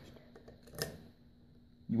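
A single light click from handling a hand tool, a little under a second in, against quiet room tone.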